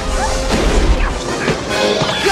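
Film soundtrack: dramatic orchestral score mixed with repeated crashing and smashing effects, the sound of the cave collapsing around the lava.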